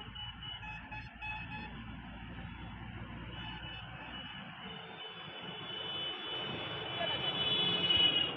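Road traffic going by, motorbikes and cars, getting louder near the end as a truck comes close.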